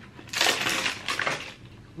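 Cardboard carton rustling and scraping as a plastic toner bottle is slid out of it, a dense crackly noise lasting about a second.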